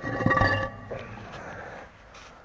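Round concrete septic-tank manhole lid set down on its concrete ring: concrete knocking and scraping on concrete with a couple of sharp clinks, loudest in the first half-second, then dying away.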